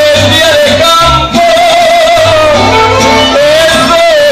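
Mariachi band playing live: violins and guitars carry a held, wavering melody over repeated low bass notes, with a singer's voice.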